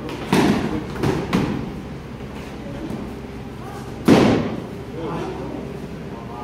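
Padded soft-kit weapons striking shields and bodies in a sparring bout: three quick thuds close together near the start, then a single louder hit about four seconds in, each echoing in a large hall.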